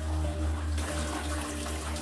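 A small stream of water babbling steadily along the floor of a mine tunnel.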